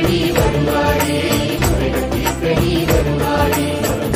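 Instrumental passage of a Tamil devotional song to Shiva: melodic instruments play over a steady percussion beat.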